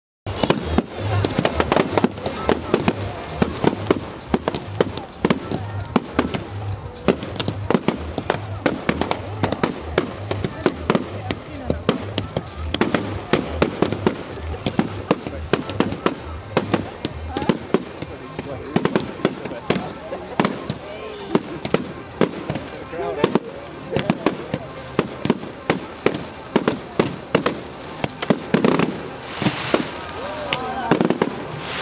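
Fireworks display: a dense, unbroken run of sharp bangs from bursting shells, several a second.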